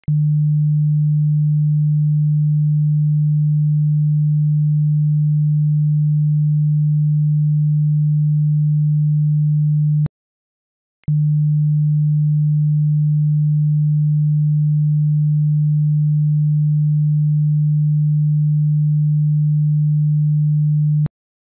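A steady 150 Hz sine test tone: one low, pure, unchanging pitch. About ten seconds in it cuts out for about a second of silence and then resumes, with a faint click as it stops and as it starts again.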